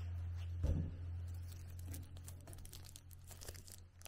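Faint crinkling and crackling of clear plastic wrap being handled and cut open around a wooden ball puzzle, with a soft thump about a second in. A low steady hum sits under the first half and then fades.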